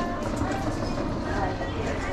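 Shop ambience: background music with voices talking over a steady hum of the room.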